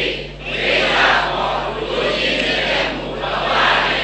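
Many voices chanting together in unison, loud and reverberant, rising and falling in phrases: a congregation's group recitation.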